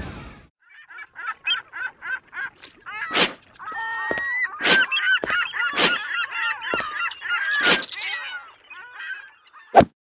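Cartoon sound effects: a rapid run of goose-like honks, about four a second at first and then overlapping into a jumble, cut by several sharp hit sounds.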